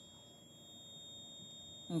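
Quiet room tone with a faint, steady high-pitched electrical whine, one unchanging tone; a voice starts again at the very end.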